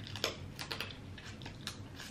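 Close-miked mouth sounds of chewing crab meat: a quick run of sharp, wet clicks and smacks, about half a dozen in two seconds.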